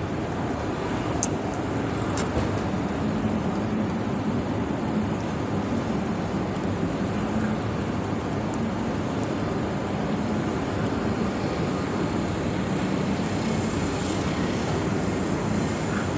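Gas brazing torch burning with a steady hiss as it heats a copper refrigerant line on an air-conditioner outdoor unit, re-brazing a leaking joint.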